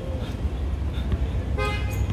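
A short car horn toot near the end, one flat high note lasting about a third of a second, over a steady low outdoor rumble.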